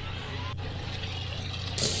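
A low, steady hum from a horror film's soundtrack ambience, with a faint tick about half a second in.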